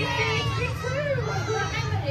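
Many children's voices calling out together, overlapping one another, over a steady low hum.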